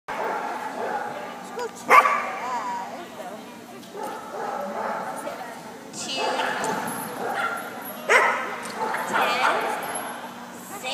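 A dog barking and yipping in sharp, excited bursts, loudest about two seconds in and again near the end, with people's voices around it.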